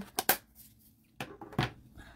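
Short hard clicks and taps of plastic stamping tools, a clear stamp block and ink pad, being handled and set down on a craft desk. Two come close together just after the start and two more about a second later.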